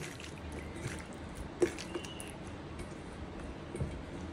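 Raw chicken pieces being squished and rubbed by hand with spices in a stainless steel bowl, a wet squelching, with one sharp click about one and a half seconds in.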